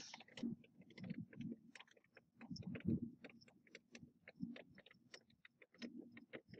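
Irregular light ticks and taps of raindrops on window glass, with a few soft low thumps in between.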